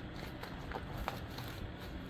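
Soft rustling of a clear plastic page protector in a ring binder as hands handle and smooth it flat, with a few faint ticks.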